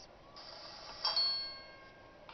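A bell-like chime struck once about a second in, several pitches ringing together and fading out: a cartoon's scene-change sound effect, heard from a television.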